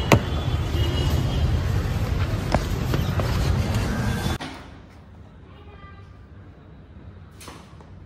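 A car door unlatching with a sharp click, then a few lighter knocks as someone gets in, over a steady hum of road traffic. The traffic cuts off suddenly a little after four seconds, leaving a quiet room with a faint voice.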